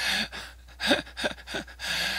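A man laughing quietly: a breathy gasp at the start, then a few short, soft laugh pulses about a second in.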